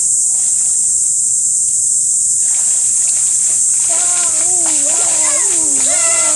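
Water splashing as a person swims through a shallow river, over a steady high hiss. From about four seconds in, a child's voice calls out with a wavering pitch.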